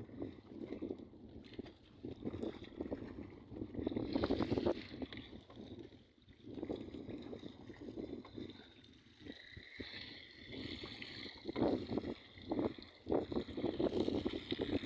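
Wind buffeting the microphone in uneven gusts over water sloshing against a fish-trap net, getting louder and choppier in the last few seconds.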